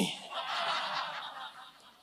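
Audience chuckling and laughing softly, dying away near the end.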